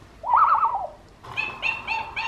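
Fisher-Price Little People toy's small speaker playing a recorded monkey call: a quick run of rising and falling hooting notes, then about five short high squeaks in a row.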